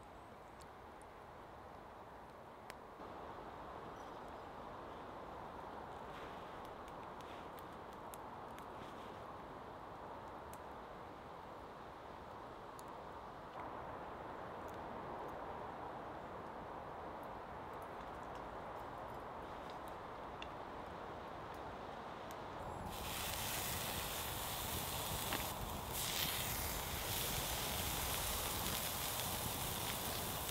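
Quiet woodland background with faint rustles and small clicks. About 23 seconds in it gives way to the louder, even hiss and crackle of a wood campfire burning with open flames.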